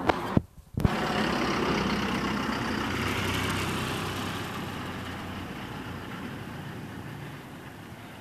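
Motor vehicle engine running with a steady hum that slowly fades over several seconds. A few sharp clicks and a brief dropout come in the first second.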